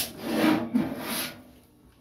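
A knock, then about a second of rough scraping and rubbing that fades away: handling noise as the computer case with the power supply on it is gripped and moved.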